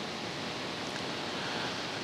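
Steady hiss of room tone and recording noise, even and unchanging, with no distinct sound events.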